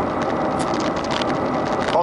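Steady road and engine noise heard inside a car cruising along a highway.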